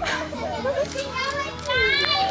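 Excited, high-pitched voices squealing and exclaiming without clear words, rising to a shrill squeal near the end.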